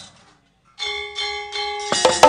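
A moment of silence, then about a second in a bronze gamelan note is struck and rings on steadily, followed near the end by a sharp knock as the Javanese gamelan starts into the piece.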